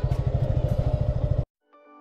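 A motorcycle engine running at low speed on a dirt climb, with a steady rapid low pulsing, cut off abruptly about one and a half seconds in. After a brief gap, background music with sustained piano-like notes begins near the end.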